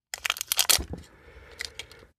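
Plastic heat-shrink sleeve being peeled and torn off an 18650 lithium cell, crinkling. A dense run of crackling fills the first second, then fainter crinkling follows.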